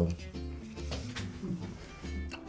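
Quiet background music with steady low sustained notes.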